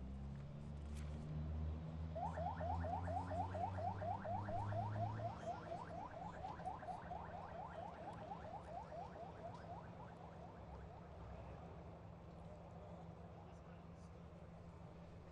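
A vehicle siren in yelp mode, rapid rising sweeps about five a second, fading gradually. Under it is a low vehicle engine rumble that climbs in pitch and stops about five seconds in.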